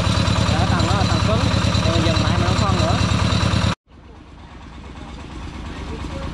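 Engine of a small bored-pile drilling rig running steadily with a fast, even beat, voices faintly over it. It cuts off abruptly a little under four seconds in, leaving a much quieter outdoor background.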